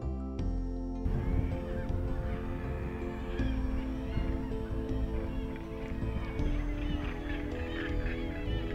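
A nesting northern gannet colony calling, a dense chorus of many short overlapping calls that comes in about a second in, over steady background music.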